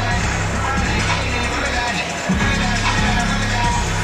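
Music with a heavy, repeating bass line over a stadium sound system, picked up by the field microphones between plays.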